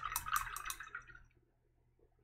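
A paintbrush working wet white paint in a plastic bottle cap: a few faint, wet ticks in the first second, then near silence.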